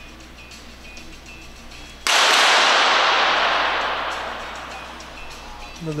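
A single sharp .22 sport-pistol shot about two seconds in, followed by a long reverberant tail that fades over about three seconds, the high end dying away first.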